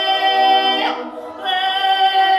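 A woman singing long held notes, breaking off briefly about a second in before taking up the next note.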